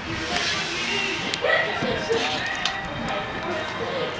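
Indistinct voices of a few people talking, over a steady hiss, with a few light clicks.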